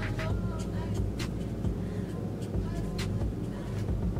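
Short, irregular scratches of a pen writing on paper, one or two a second, over a steady low rumble and hum.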